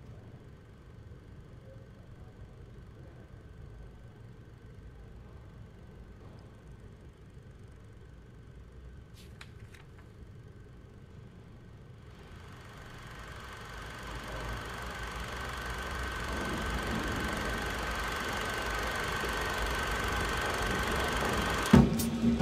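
A faint steady hum with a thin high tone and a couple of light clicks. From about halfway a noisy drone swells steadily louder.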